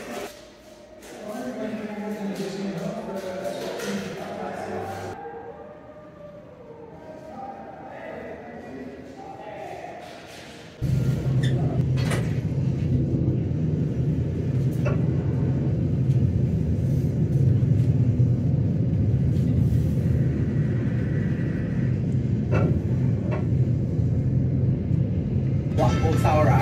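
Passenger lift cabin rumbling steadily as it climbs Blackpool Tower, with a few sharp clicks. The rumble starts abruptly about eleven seconds in, after a stretch of faint voices.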